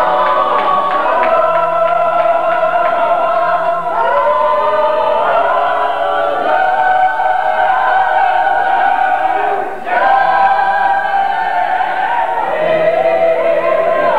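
A church choir of women's and men's voices singing together in long held notes, with a brief break about ten seconds in.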